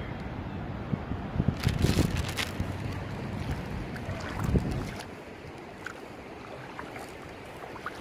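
Wind buffeting the phone's microphone in gusty low rumbles, easing off about five seconds in. A few sharp clicks and rustles of handling about two seconds in.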